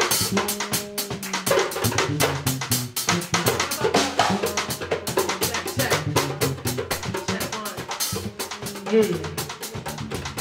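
Live jazz band playing: a drum kit keeps up rapid cymbal and snare strokes over a low, stepping bass line from an electric stringed instrument.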